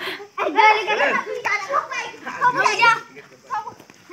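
Children shouting and calling out to each other during a chasing game, in high-pitched overlapping calls that fade near the end.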